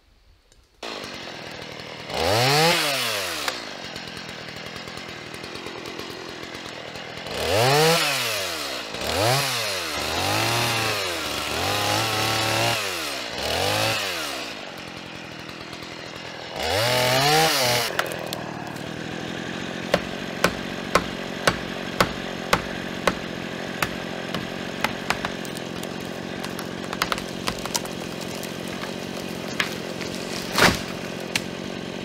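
Chainsaw started and run in several bursts, its engine pitch rising and falling as it revs and cuts into a standing tree's trunk. It then settles to a steady idle under a regular series of sharp knocks, about one and a half a second, from felling wedges being hammered into the cut.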